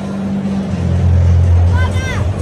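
Music with a deep bass line stepping down in pitch, over crowd chatter and voices.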